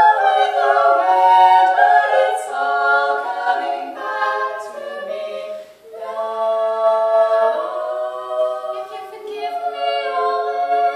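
Female barbershop quartet singing a cappella in close four-part harmony, holding sustained chords, with a brief break between phrases about six seconds in.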